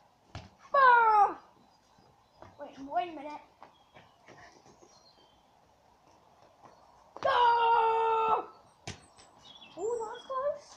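A child's voice without clear words: a short falling call about a second in, softer sounds around three seconds, then a long held shout from about seven seconds. A single sharp knock follows about nine seconds in.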